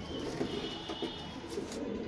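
Madrasi pigeons cooing: a soft, low murmur.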